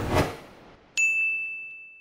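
Logo sting sound effect: a short rush of noise fades out, then about a second in a single bright ding strikes and rings on one high tone, dying away.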